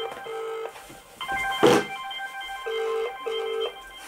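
Phone ringback tone from a smartphone's loudspeaker: the call is ringing and not yet answered, heard as short low double rings, one near the start and another about two and a half seconds later. A single knock about halfway through.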